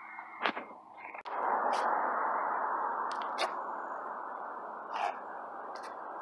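Steady noise of road traffic going by, starting abruptly about a second in and slowly easing, with a few sharp clicks of the handheld phone being handled.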